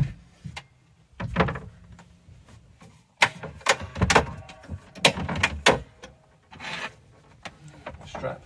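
A folding camper bed being folded away: hinged board panels and fold-out legs knocking, clicking and rubbing as they are swung up and stowed, with a cluster of sharp knocks in the middle few seconds.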